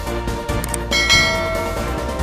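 Background music, with a bright bell chime about a second in that rings and fades, as the notification bell icon of a subscribe animation is clicked.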